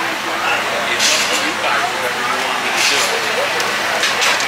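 Background chatter of people in a busy race pit, over a steady outdoor noise, with two short hissing bursts, about a second in and near the end of the third second.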